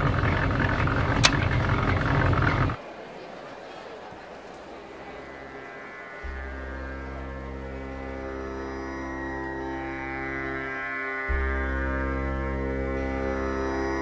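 Raagini Digital electronic tanpura droning a steady chord rich in overtones, coming in about six seconds in, its low notes shifting briefly near eleven seconds. Before it, a loud rush of noise with a single click ends abruptly just under three seconds in.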